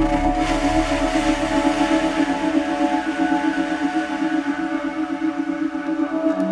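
Ambient meditation music: sustained chords held over a steady, pulsing low drone. The music is tuned to 432 Hz and carries a 7.83 Hz Schumann-resonance pulse.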